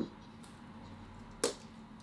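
Two short knocks on a desk: a dull one right at the start as a ceramic mug is set down, and a sharper, louder click about a second and a half in as things on the desk are handled.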